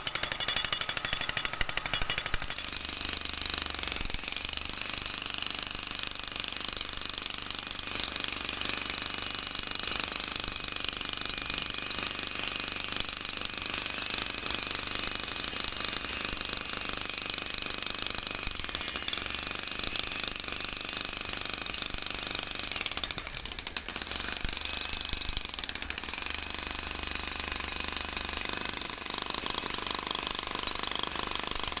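Electric demolition breaker hammering continuously into old, thick, steel-mesh-reinforced concrete foundation, with a brief let-up about three-quarters of the way through.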